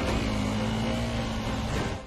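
Motorcycle engine running at a steady pitch, as heard on a film soundtrack.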